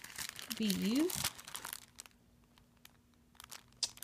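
Clear plastic sleeve of a sticker pack crinkling as it is handled, busiest in the first second and a half. After that there are only a few faint rustles over a faint steady hum.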